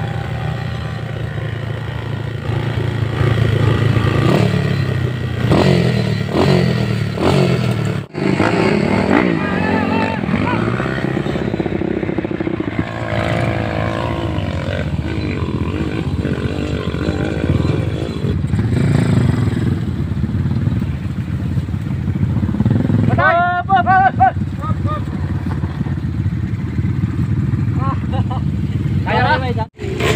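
Small trail motorcycle engine revving hard and unevenly as it climbs a steep dirt hill, its pitch rising and falling with the throttle. Shouting voices break in near the end.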